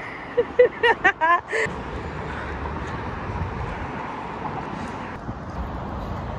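A few brief voices in the first second and a half, then a steady outdoor background noise with a low rumble.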